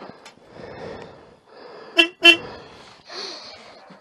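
Two short toots of a motorcycle horn, about a third of a second apart, loud against the background.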